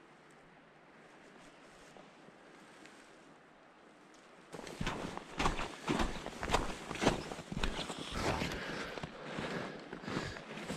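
Faint steady hiss, then from about halfway through, irregular footsteps on a snowy trail, a quick uneven run of scuffs and knocks.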